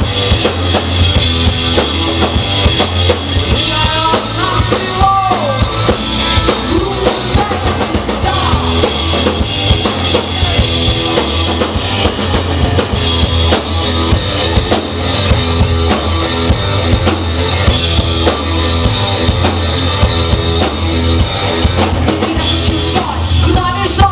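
Live rock band playing loudly through a club PA, the drum kit and a heavy, steady low end to the fore.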